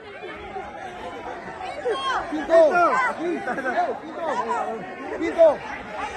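Football crowd in the stands: many fans talking and calling out at once, overlapping voices with a few louder shouts.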